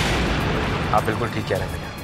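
A sudden boom-like sound-effect hit right at the start, its noisy wash fading away over the next two seconds, laid over background music.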